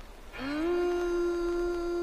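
Music from a vinyl record on a portable record player starts about half a second in: one long held note slides up into pitch and holds steady.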